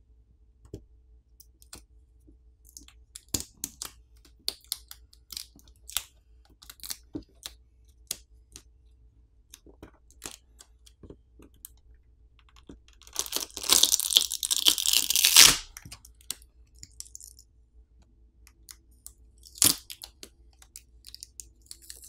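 Battery adhesive tearing loose as the OnePlus Nord CE 3 Lite's battery is pulled off the midframe by its pull pouch: a loud ripping noise of about two and a half seconds a little past the middle. Light clicks and taps of fingers and parts handling the phone come before and after, with one sharper click near the end.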